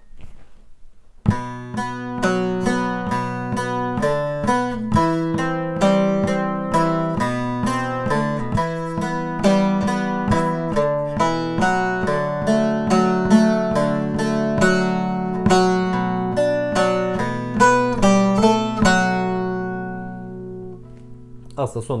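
Bağlama (saz) played solo: an arpeggiated folk melody of single picked notes in a steady run. It starts about a second in and ends with a last note ringing out near the end.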